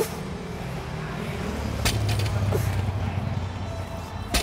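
Barbell plates give a single sharp metallic clink as a deficit deadlift breaks from the floor, a little under two seconds in, over a low rumble.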